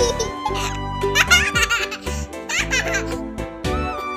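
Children's background music with baby giggling laid over it, in two bursts about a second in and again near three seconds.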